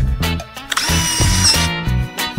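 Cartoon sound effect: a short mechanical whirring like a power drill, lasting under a second near the middle, over upbeat children's background music with a steady beat.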